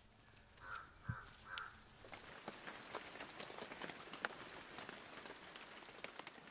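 Faint rain pattering, with individual drops ticking sharply; it sets in about two seconds in. Before that there are three short soft sounds and a low knock about a second in.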